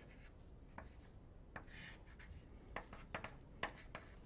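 Chalk on a blackboard drawing short strokes: a series of faint taps and brief scratches as lines are added to a diagram.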